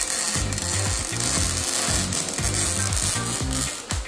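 Electric arc welding under a car: a steady crackling hiss as a rusted-off exhaust bracket is welded back onto the exhaust.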